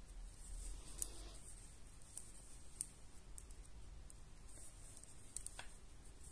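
Faint handling sounds of knitting needles working yarn, with light rustling and a few small sharp clicks a couple of seconds apart.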